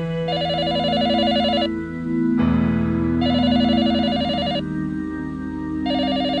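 Telephone ringing in a warbling electronic trill: bursts about a second and a half long, repeating roughly every three seconds, three times. Sustained background music with held chords plays underneath.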